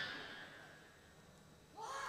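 The tail end of an electronic buzzer tone dying away over about half a second. Then low, quiet hall ambience, until a man's voice starts near the end.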